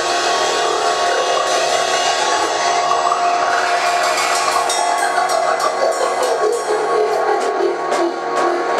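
A Pearl drum kit played along to a loud recorded drum-and-bass track, sustained synth tones under the drums. Quick, sharp snare and cymbal strikes stand out more from about halfway through.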